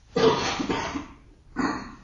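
A person coughs once: a rough, noisy burst of about a second that fades away. A shorter breathy sound follows near the end.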